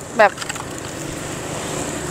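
Road traffic: a motor vehicle's engine running steadily with tyre and road noise, slowly growing louder as it approaches.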